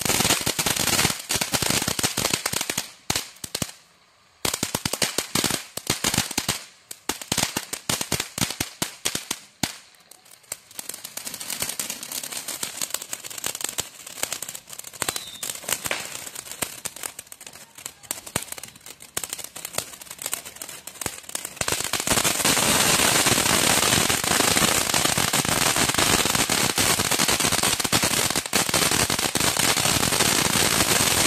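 Fireworks crackling and popping in rapid, dense runs of sharp cracks, with two brief lulls early on. About two-thirds of the way through, the cracks merge into a loud, unbroken crackle.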